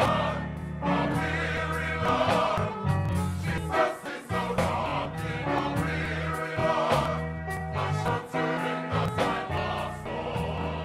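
Background music: a choir singing a gospel-style song over a steady bass line.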